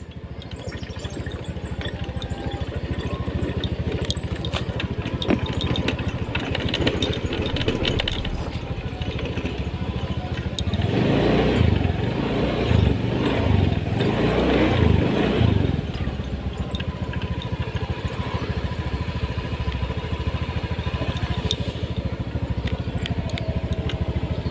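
Motorcycle engine running steadily, growing louder for about five seconds in the middle.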